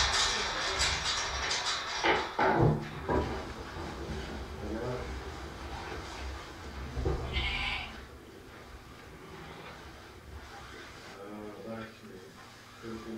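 Shetland sheep bleating: one call about seven seconds in and another near the end, after a busy stretch of shuffling and knocks as the flock crowds into the pen.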